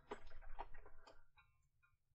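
Several light clicks at a computer, coming in a quick uneven run and dying away after about a second and a half.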